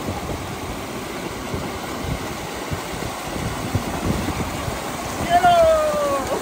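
Shallow mountain stream rushing over boulders, a steady wash of running water. Near the end a man's voice calls out briefly.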